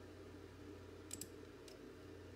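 Faint computer mouse clicks: a quick pair about a second in and a single softer click just after, over a low steady hum.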